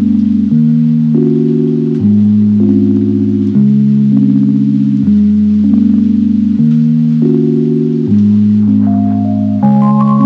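Outro background music: sustained low chords changing about every second and a half, with a higher melody of single notes coming in near the end.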